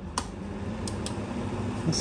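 A sharp button click on a plastic desk fan's control panel, then the fan running with a steady low hum and rushing air that grows louder after the press, with a couple of faint ticks about a second in.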